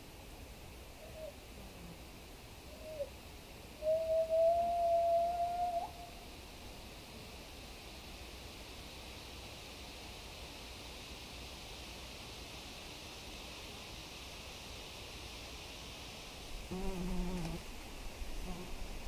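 A whistle-like call in the forest quiet: two short pitched blips, then one clear, slightly rising tone held about two seconds. Near the end comes a brief low pitched sound.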